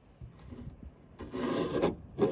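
Paper trimmer blade cutting through card stock: one loud rasping cut lasting under a second, about a second in, after faint paper-handling rustles.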